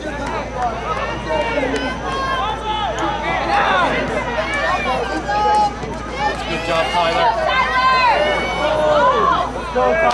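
Several voices shouting and calling out at once across an outdoor soccer field during play, overlapping throughout with no clear words.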